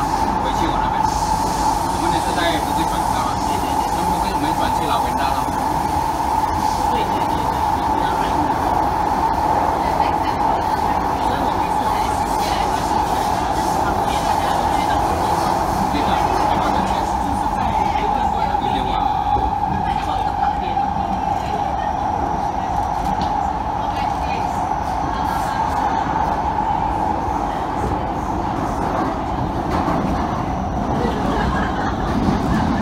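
Singapore MRT C751B train heard from inside the car while running between stations: a steady rail rumble and hiss with a constant whine, and the air conditioning running.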